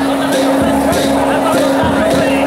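Ground fountain firework (bang fai dok) burning and spraying sparks with a steady rushing hiss, mixed with crowd voices and music.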